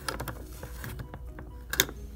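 Small plastic toy parts of a Calico Critters crib clicking and tapping as a mobile piece is fitted onto the crib rail, with a sharper click near the end.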